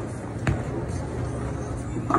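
A bowling ball lands on the wooden lane with a single thud about half a second in, then rolls on with a steady low rumble.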